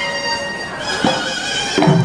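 Thai wong bua loi funeral music: a pi chawa, a nasal double-reed oboe, plays a sustained, wavering melody, with klong malayu drum strokes about a second in and near the end.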